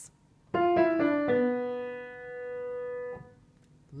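Piano playing a short right-hand figure: a quick group of about four notes, then one note held and slowly fading away.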